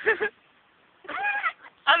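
A toddler gives a short whining cry that rises and then falls, about a second in, while her runny nose is wiped with a cloth.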